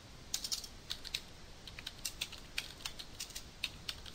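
Computer keyboard being typed on: irregular runs of quick key clicks, starting a moment in.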